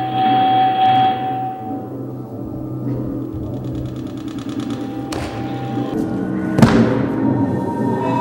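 Electronic dance score: a steady low drone with a held mid-pitched tone near the start, then a fast fluttering pulse in the high range, and two sharp hits past the middle, a second and a half apart, the second the loudest.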